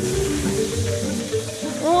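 Automatic car wash soap applicator starting up: a sudden hiss of spraying liquid that fades over about a second and a half, over background music.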